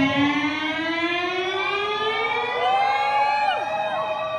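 Electric guitar played through an amplifier: one long sustained note glides slowly upward by about an octave, like a siren, while shorter bent notes rise and fall above it.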